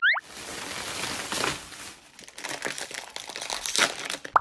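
Thin plastic shopping bag crinkling and rustling as a heap of wrapped snack packets is tipped out of it onto a table, the packets crinkling against each other as they slide out. A short rising chirp opens it.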